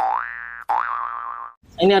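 A cartoon-style 'boing' sound effect played twice in a row. Each is a rising tone about two-thirds of a second long, cut off cleanly. A man's voice begins near the end.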